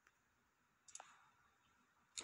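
Near silence, broken by a faint click at the start and a few faint clicks about a second in.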